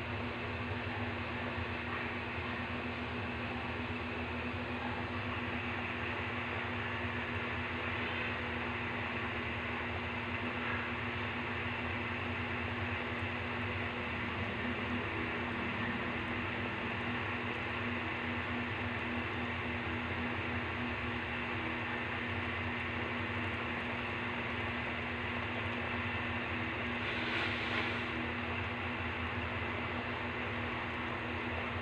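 Pot of sopas (milky chicken noodle soup) boiling: a steady hiss with a low hum underneath.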